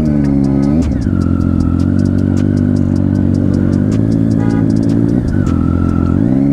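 Triumph Street Triple 675's inline-three engine heard from the rider's seat, its pitch falling as the throttle closes in the first second. It runs steadily at low revs, then rises again near the end as the bike pulls away.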